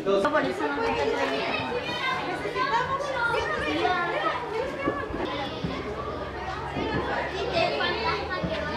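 Several children chattering and talking over one another, with no single voice standing out.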